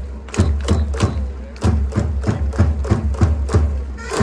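Japanese pro baseball cheering section performing a player's cheer song: a steady beat of drum hits and crowd claps about three times a second, with wind instruments held faintly underneath.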